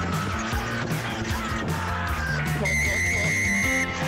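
A music bed with a steady bass line runs throughout. About two-thirds of the way in, a single long, shrill whistle blast, typical of a referee's whistle stopping play, lasts a little over a second.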